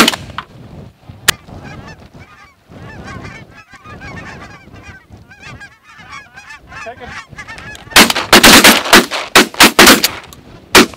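A flock of lesser Canada geese honking overhead, many birds calling over one another, with a single sharp crack about a second in. About eight seconds in, a rapid volley of shotgun blasts from several guns fired into the flock.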